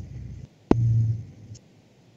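A single sharp click about two-thirds of a second in, then a brief low hum lasting about half a second, with gaps of dead digital silence on either side: video-call microphone audio cutting in and out between speakers.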